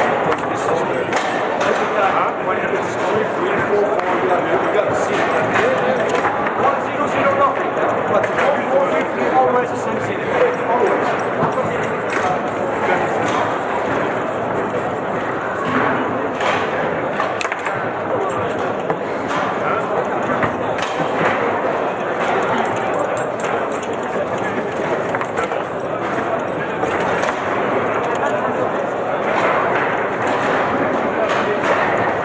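Babble of many voices in a large hall, with frequent short clacks and knocks from a Lehmacher table-football table as the ball is struck by the rod figures and hits the table walls.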